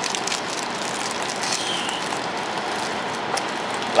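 Foil trading-card booster pack crinkling lightly as it is torn open, over a steady hiss of room noise that is the loudest thing throughout.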